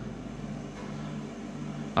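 Steady fan whir with a faint low hum from a portable yellow building-site machine running on the floor.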